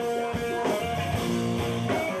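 A hardcore punk band playing live and loud: distorted electric guitar chords change about every half second over steady drum hits.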